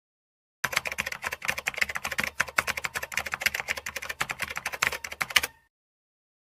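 Typewriter keys clacking in a rapid, uneven run of many strikes a second, starting about half a second in and stopping abruptly just before the end.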